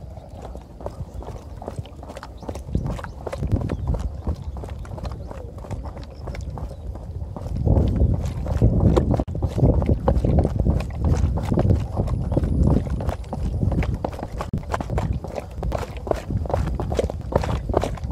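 Quick, rhythmic running footsteps on concrete steps, over a low rumble that grows louder about eight seconds in.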